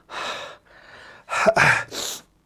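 A man's audible breaths close to the microphone: a sharp intake just after the start, a fainter breath about a second in, then a louder, slightly voiced breathy exhale near the end.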